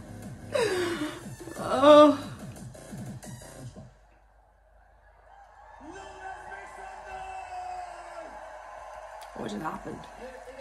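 A woman laughing and gasping loudly over electronic dance music; the loudest cry comes about two seconds in. The music stops abruptly about four seconds in, and after a short silence a long held tone comes in.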